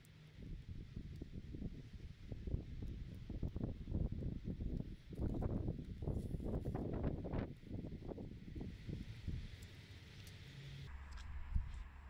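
Wind buffeting the microphone in uneven gusts, a low rumble that grows busier and louder around the middle before easing off.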